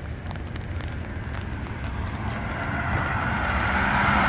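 A car approaching on a wet road, the hiss of its tyres on the wet pavement growing gradually louder.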